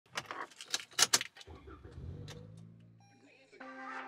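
Keys jangling and clicking, then a car engine cranks and starts about a second and a half in, its revs rising and then settling toward idle. Music comes in near the end.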